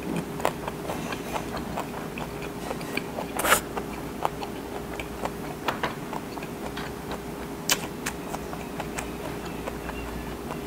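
Close-miked chewing with the mouth closed: irregular wet clicks and crunches of food being chewed, with one louder crunch about three and a half seconds in. A steady faint hum runs underneath.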